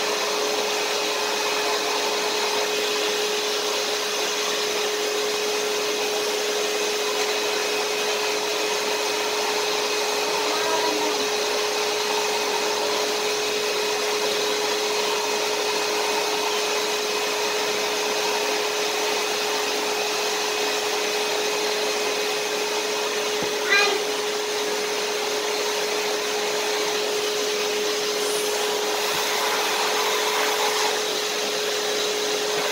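Vacuum cleaner running steadily, a constant rushing of air with an even whine, and a single sharp knock about two-thirds of the way through.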